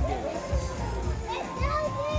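Children calling out and playing around a pool, with music in the background.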